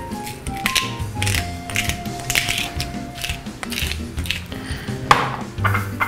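Pepper mill being twisted to grind pepper, a rough grinding in short bursts, over soft background music.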